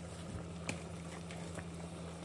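Faint, steady low hum in a kitchen, with a few soft clicks.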